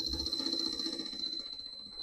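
Metal lathe running, driven by a three-phase motor on a variable-frequency drive, with a boring tool in the bore of the spinning part. A steady hum under a high steady whine fades slowly.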